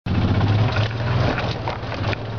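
Golf cart driving over rough, bumpy ground: a steady low drive hum with frequent knocks and rattles from the body jolting over bumps, since the cart has no suspension.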